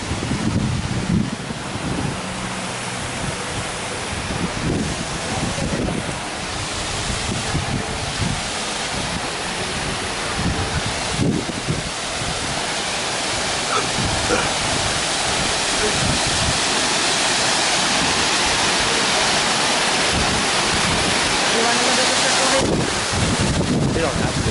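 A waterfall's steady rush, gradually growing louder, with faint voices of passers-by underneath.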